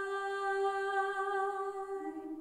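Background vocal music: a voice holding one long, steady hummed note without words.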